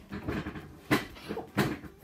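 A few wooden knocks and thumps of a chair and table being bumped as a child climbs up onto his chair.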